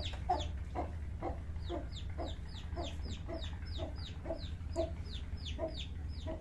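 Domestic chicken calling in an even series of short, clucking calls, about two to three a second, each with a thin falling high note.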